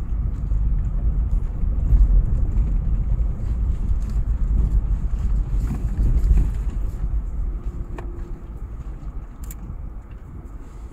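Car driving over an unpaved dirt track, heard from inside the cabin: a low, uneven rumble of tyres and engine that eases off after about seven seconds.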